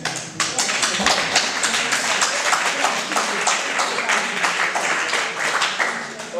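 Audience applauding: many hands clapping densely, starting suddenly and dying away near the end.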